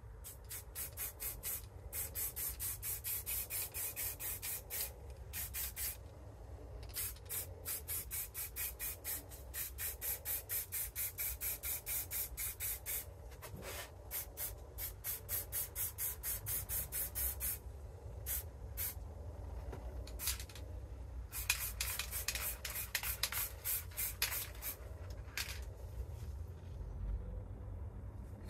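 Aerosol spray paint can fired in quick short bursts, about three a second, each a brief hiss of spray. The bursts come in runs of several seconds with brief pauses, and a longer gap a little past the middle before a final run.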